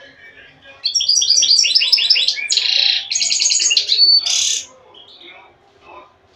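Caged goldfinch singing one loud burst of song about four seconds long, starting about a second in: quick runs of repeated chirps, a buzzy stretch, a fast twitter and a thin whistle, ending on a buzz.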